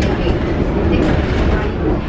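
Steady low rumble of a moving train heard from inside the carriage, running on the rails.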